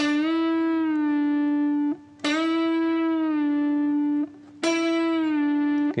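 Electric guitar playing a full-tone bend and release on the G string at the 7th fret, three times. Each note is picked and pushed up a whole tone (D to E), held, then let back down to its starting pitch and held again before being cut off.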